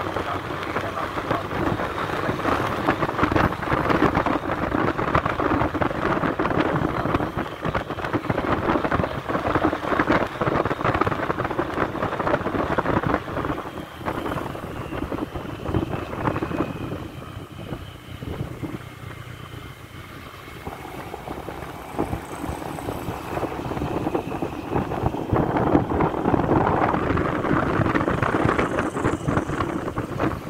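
Wind buffeting the microphone on a moving motorcycle, over the bike's engine and tyre noise. The rush eases for a few seconds in the middle, then builds again.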